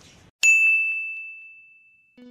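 A single bright ding: one high, clear tone struck about half a second in and fading away over about a second and a half.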